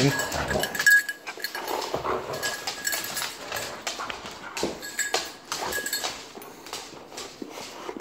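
A Siberian husky puppy and a second dog scuffle over a knotted rope tug toy on a hardwood floor: scattered clicks and knocks of claws and paws on the wood, mixed with the dogs' own noises.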